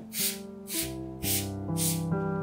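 Trigger spray bottle spritzing four quick sprays, about two a second, each a short hiss.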